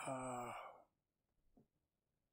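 A man's drawn-out, breathy "uh", sigh-like and falling slightly in pitch, lasting under a second. It is followed by a faint click.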